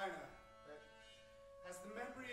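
Quiet held instrumental notes from a small chamber ensemble, a few steady tones sustained together. A voice trails off right at the start, and a new sound comes in just before the end.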